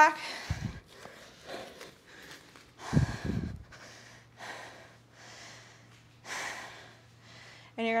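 A woman breathing hard after exercise: quick, audible breaths about every half second, out of breath from a set of jumping squats. A soft thump about half a second in and a heavier one around three seconds as she gets down onto a foam exercise mat and lies back.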